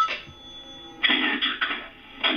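A telephone ring tone cuts off as the call is answered. About a second later a rasping, breathy noise comes over the phone line for about a second, as from a caller breathing heavily.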